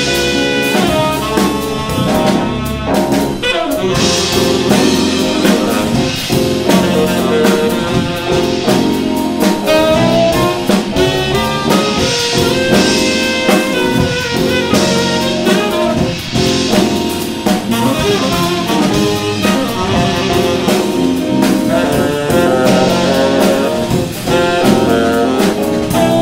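Jazz quartet playing live: saxophone leading over electric keyboard, electric bass guitar and drum kit with steady cymbal work.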